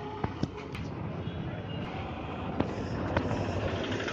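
Street ambience: a steady low rumble of motor traffic, broken by a few sharp clicks and knocks.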